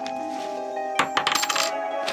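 A square-holed coin dropping onto a wooden table about a second in: a sharp hit followed by a short clatter and high ringing. Background music with sustained tones plays throughout.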